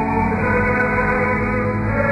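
Cathedral choir singing held chords with organ, the chord shifting about half a second in, in an old mono radio recording with a dull, narrow sound.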